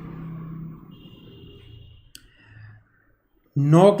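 Marker writing on a whiteboard: faint strokes, a brief high squeak about a second in, and a sharp click just after two seconds. A man's voice starts speaking near the end.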